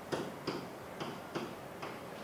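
Light tapping of a stylus on an interactive whiteboard while short marks are written, about five separate ticks at uneven intervals.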